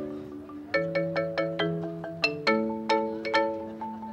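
Marimba played with four yarn mallets, two in each hand: a quick run of struck notes and chords, several strikes a second, each ringing briefly.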